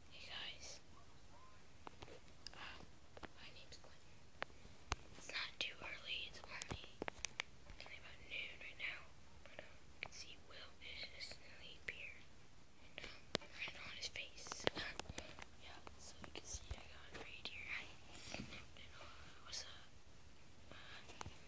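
Whispering close to the microphone, hushed and breathy, in short phrases throughout, with a few sharp clicks in between.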